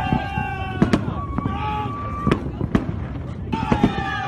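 Aerial fireworks bursting overhead: a string of sharp bangs, about seven in four seconds, irregularly spaced.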